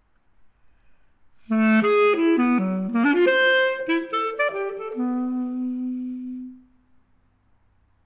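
Solo basset horn: after a short silence, a quick phrase of rapidly changing notes begins about a second and a half in, settles onto a longer held note and stops about a second before the end.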